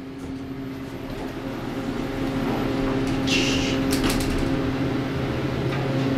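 KONE EcoDisc machine-room-less elevator car closing up and starting to rise, heard from inside the car: a steady machine hum that grows louder as the car gets under way, with a short hiss and a few clicks about three and a half seconds in.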